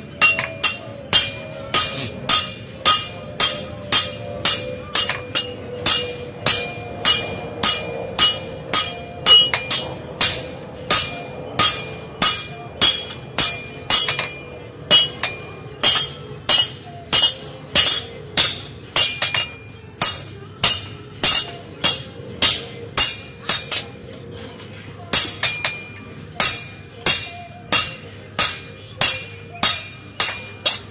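Hand hammer striking a metal propeller blade on a metal anvil, ringing blows at about two a second, with one short pause late on.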